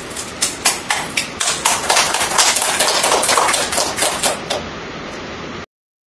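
A small audience applauding, with many separate hand claps for about four and a half seconds before they die away. The sound then cuts off suddenly.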